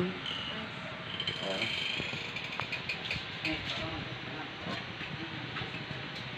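Faint background voices over steady household room noise, with a few small clicks.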